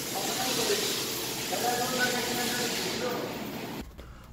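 Faint, distant voices over a steady hiss. The sound cuts off suddenly just before the end.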